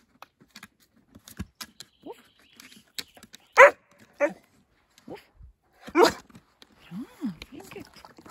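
A black Labrador-type dog barking on command: three short, sharp barks, two close together about halfway through and a third about two seconds later, the first the loudest.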